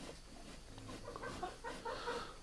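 Faint, soft, intermittent clucking-like calls from farm animals in a barn, quiet beneath the room's background noise.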